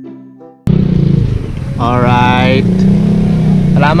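Chiming background music that cuts off abruptly about half a second in. It gives way to a loud, steady engine drone, plausibly from a motorcycle running nearby, with a voice calling out around two seconds in.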